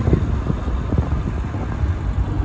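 Jaguar E-Type's 3.8-litre straight-six running steadily under way, heard from the cockpit as a low rumble mixed with wind and road noise.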